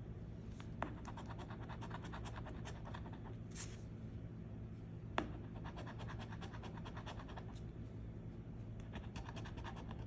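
A coin scratching the coating off a scratch-off lottery ticket in quick, faint, repeated strokes, with a few louder clicks along the way.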